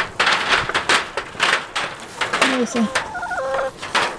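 Footsteps swishing through grass, then goats bleating: a low, wavering, falling bleat about halfway through and a higher, quavering one just after it.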